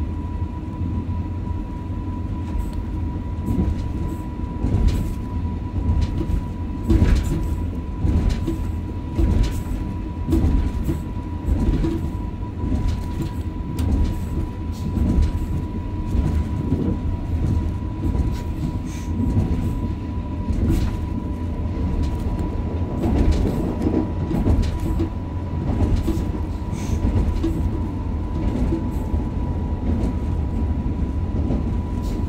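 Passenger train running on rails, heard from the driver's cab: a continuous low rolling rumble with scattered knocks, and a thin steady high tone throughout.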